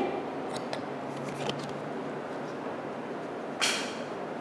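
Quiet room tone with a few faint clicks and one brief rustle near the end: Pokémon trading cards being handled close to the microphone.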